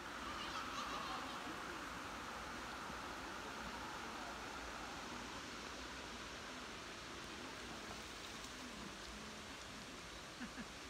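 Steady rushing of a shallow stream flowing over riffles, an even water noise with no break.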